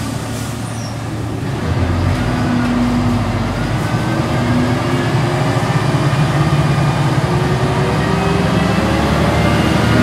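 Volvo B10M Mk3 bus's mid-mounted six-cylinder diesel engine and ZF automatic gearbox heard from inside the cabin as the bus pulls through traffic. The engine note gets louder about two seconds in, then rises slowly in pitch as the bus accelerates.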